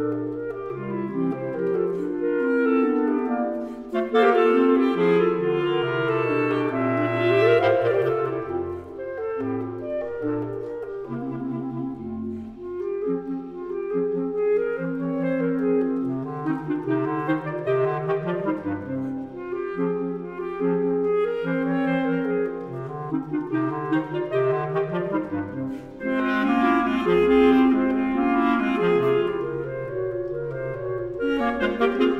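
A classical woodwind trio of clarinets and basset horns plays a rondo. Several lively interweaving melodic lines move over a lower bass part, without a break.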